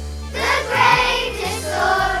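Children's choir singing a Christmas song over an instrumental backing with a bass line; the voices pause briefly and come back in about a third of a second in.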